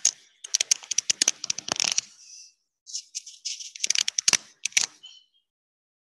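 Handling noise as a hand adjusts the computer's camera close to its microphone: rustling and quick irregular clicks in two bursts, which cut off abruptly a little after five seconds in.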